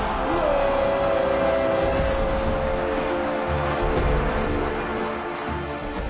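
A Spanish football commentator's long held shout of 'gol' as a goal goes in, sustained on one pitch for about four seconds, over loud stadium crowd noise and background music.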